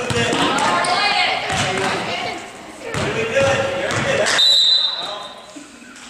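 A basketball bouncing on a hardwood-style gym floor as a player dribbles up the court, with echoing voices around it. About four and a half seconds in, a referee's whistle gives one short, high blast to stop play for a call.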